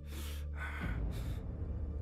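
A man gasping for breath twice within the first second, heavy and labored, over a low, steady musical drone.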